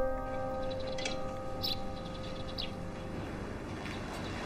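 A held piano chord from the music score dies away over the first few seconds. A few short, faint bird chirps come about one, one and a half and two and a half seconds in.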